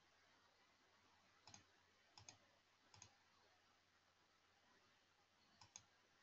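Faint computer mouse clicks against near silence: a few short clicks spread over several seconds, some in quick pairs.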